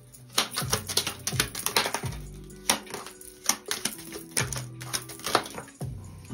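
Small mini tarot cards being handled and dealt down onto a table of laid-out cards: a run of sharp card snaps and taps, over soft background music.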